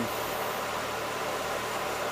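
Holden Commodore engine idling with its electric radiator fan running, a steady even hum and rush of air. The fan is on all the time instead of cycling on and off, which the owner blames on a faulty ABS module.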